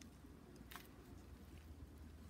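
Near silence: a few faint crackles of dry potting soil being crumbled off a succulent's root ball by fingers, over a low steady hum.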